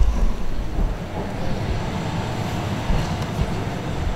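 A steady low rumble with a hiss over it, without clear tones or distinct strokes.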